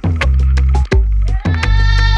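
Afro-cosmic electronic dance track: a repeating deep bass-and-kick beat with sharp percussion hits. About three quarters of the way in, a buzzy pitched sound with many overtones slides up into a held note.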